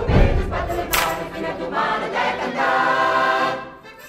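Mixed folk choir of men and women singing together, with a heavy low thump in the first second; the sung phrase dies away shortly before the end.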